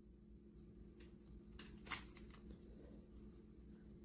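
Near silence: faint handling of a plastic toy figure, with one small click about two seconds in.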